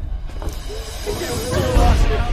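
Startled voices crying out over dramatic background music with a hissing haze and a deep rumble that swells to its loudest near the end.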